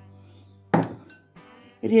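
A glass bowl clinks once against a hard surface about three-quarters of a second in, leaving a brief ring, over steady background music.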